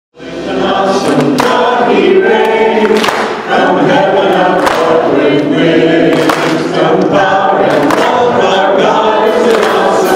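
A choir singing, starting a moment in and carrying on steadily.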